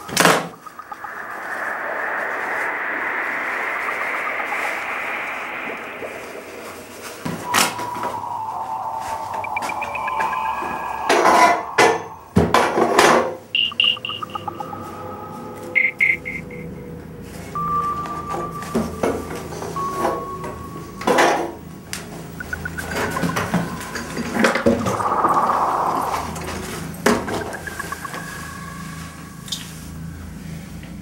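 Film score music: a swelling wash of sound over the first few seconds, then sparse held tones broken by many sharp knocks and clicks, with a low hum entering about halfway through.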